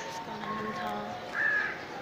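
A bird calling once, about one and a half seconds in, over faint background noise.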